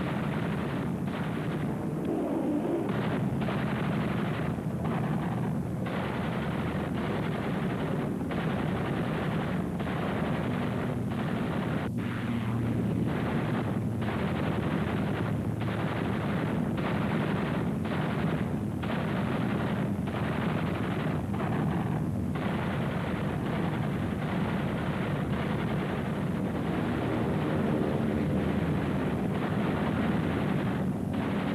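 Rapid, continuous machine-gun and cannon fire from attacking aircraft over the steady drone of their engines.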